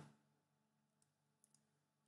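Near silence, with a few faint clicks of a computer mouse.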